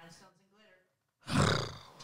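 A woman's loud, breathy groan of exasperation close to the microphone, coming in just past halfway and trailing off, after a faint brief murmur at the start.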